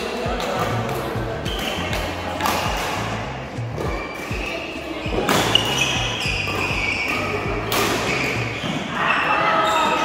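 Badminton rackets striking a shuttlecock in a rally, sharp cracks every couple of seconds that echo around a large sports hall, the loudest a little past halfway. Background music with a stepping bass line and voices runs underneath.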